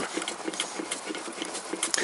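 A few light, irregular metallic clicks and knocks from a hand working a connecting rod and piston in an upside-down engine block, over a steady hiss.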